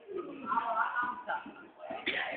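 Faint, indistinct voices of people talking in the background.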